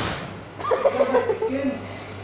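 A person's voice rising and falling in pitch for about a second, starting about half a second in, over a steady low hum.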